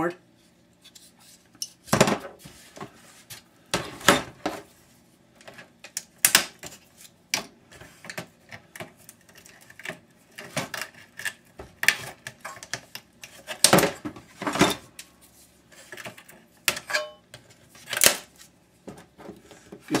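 Metal and plastic parts of a flat-screen computer monitor clinking and knocking as it is taken apart by hand. Irregular sharp clacks come every second or two.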